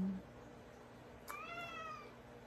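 A domestic cat meowing once, a single faint call about a second and a half in that rises slightly and then falls away.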